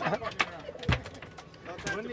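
A few scattered clicks and one low thump about halfway through, over faint background noise, in a lull between shouts.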